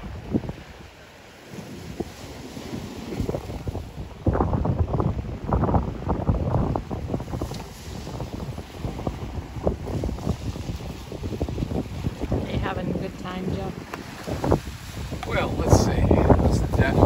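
Wind buffeting the microphone over waves washing onto a rocky shore, a gusty low rumble that gets louder about four seconds in.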